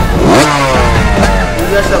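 Film-trailer soundtrack: a motorcycle engine revving, its pitch falling, over background music, with a voice coming in near the end.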